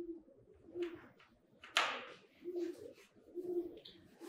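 A bird cooing faintly in the background, a short low call repeated about once a second. There is a single sharp tap about two seconds in.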